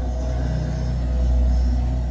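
Eerie background music: a steady deep drone with faint held tones above it.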